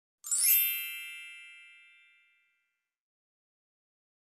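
A single bright chime, struck once a moment in, with many high overtones ringing out and fading away over about two seconds.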